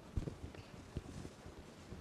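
A pause between sentences: faint room noise with two or three soft, dull knocks, one near the start and one about a second in.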